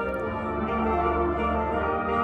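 Marching band playing a slow passage of long held chords over a sustained low note, the harmony shifting about twice.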